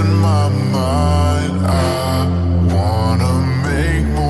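Bass-boosted slap house music: heavy held bass notes under a lead melody that slides up and down in pitch.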